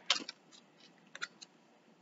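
Scissors cutting through paper: one snip near the start, then a quick run of about three short snips about a second in.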